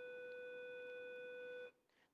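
A faint, steady pitched tone, held at one pitch with a few higher overtones, that cuts off suddenly near the end.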